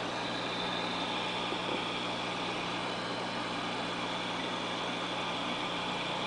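Steady low electrical hum with an even hiss over it, from aquarium equipment running.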